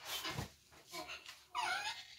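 A cloth being handled on a leather sofa, a brief rustle at the start, then a toddler's short high-pitched squeal that falls in pitch near the end.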